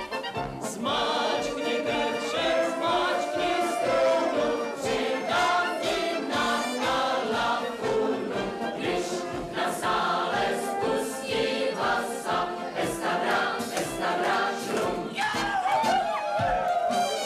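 A group of voices singing a song together over band accompaniment, with a steady bass beat about twice a second.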